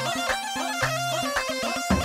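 Kurdish wedding dance music: a high, bending wind-instrument lead melody over bass notes and a regular drum beat.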